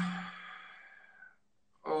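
A man's drawn-out hesitant 'uhh' that trails off into a breathy sigh and fades away, followed by a short silence.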